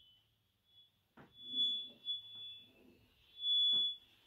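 Chalk being drawn in an arc across a chalkboard, scraping and giving a thin high-pitched squeal in two strokes, the second and louder one about three seconds in.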